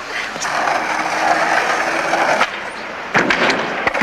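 Skateboard wheels rolling on street asphalt, a steady rumble that cuts off abruptly about two and a half seconds in. A few sharp knocks of a board follow near the end.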